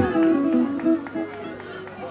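Live band's music fading out at the end of a song, a few held notes dying away.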